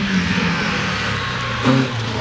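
Rally car engine as the car takes a tight bend: the note falls as it slows, then comes back in louder bursts of throttle about a second and a half in, with tyre and road noise underneath.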